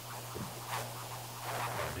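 Faint handling sounds of gloved hands moving cubes of raw pork into a stainless steel mixing bowl, over a low steady hum.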